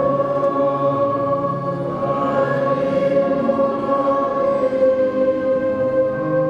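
Choir singing slowly in long held chords, the notes sustained for seconds at a time.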